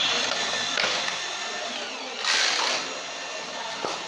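Plastic gear mechanism of a Tomica toy parking tower running as its hand crank is turned, a steady mechanical whirring, with a louder rush of noise about two seconds in.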